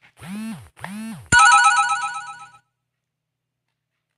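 Electronic ringtone-like jingle: two swooping tones, each rising and falling, then a loud, rapidly pulsing ringing chime of several steady tones that fades out after about a second.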